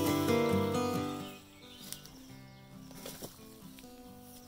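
Acoustic guitar background music that drops sharply in level about a second and a half in and carries on faintly, with a couple of faint clicks.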